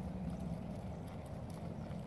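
Faint, muffled hoofbeats of a horse loping on soft arena sand, under a low, steady rumble.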